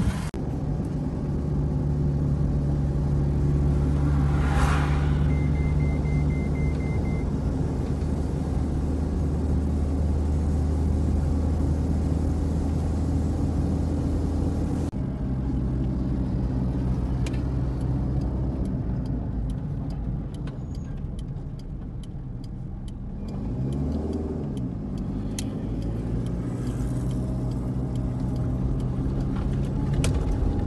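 Car engine and road noise heard from inside the cabin while driving: a steady drone, broken by an edit about halfway through. In the second half there are scattered light clicks, and around 24 s in the engine pitch dips and then climbs again.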